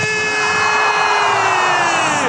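Football commentator's long drawn-out shout, one held note that sags slightly in pitch near the end, over the noise of a stadium crowd as an attack builds in front of goal.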